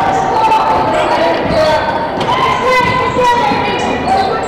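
A basketball being dribbled on a hardwood gym floor during live play, mixed with the voices of players and spectators.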